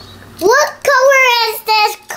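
A young child's sing-song voice in three drawn-out phrases, the first sliding up in pitch.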